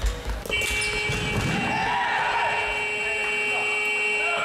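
Sports-hall buzzer or horn sounding one long, steady, unchanging tone that starts about half a second in and holds for nearly four seconds, the end-of-game signal, over faint voices in the hall.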